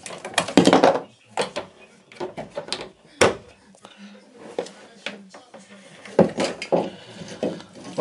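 Irregular clicks and knocks of plastic plumbing parts being handled and pushed into place while a shower waste valve and hose are fitted, with one sharp click about three seconds in.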